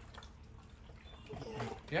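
Quiet background with a low steady hum, then a short spoken "yeah?" near the end.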